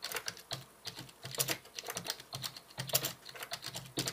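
Typing on a computer keyboard: an uneven run of key clicks, several a second.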